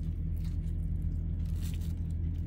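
Soft crunching and crinkling of a paper sandwich wrapper as a cheesesteak is handled and lifted, a few faint crackles over a steady low hum.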